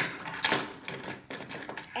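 Hard plastic toy parts of a Barbie doll and puppy stroller clicking and tapping against each other and the tabletop as the doll is set onto the stroller handle. A handful of clicks, the sharpest right at the start and another about half a second in.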